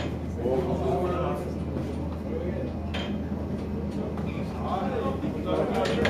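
Steady low hum of running mill machinery, with two sharp knocks about three seconds apart and indistinct voices.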